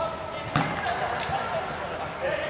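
A single sharp thud of a football on artificial turf about half a second in, over the distant shouts and chatter of players.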